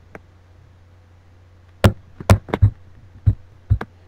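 A faint steady low hum, then about five short, sharp knocks or taps at uneven gaps in the second half.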